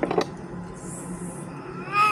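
A short high-pitched vocal cry that rises and then falls in pitch, once, near the end.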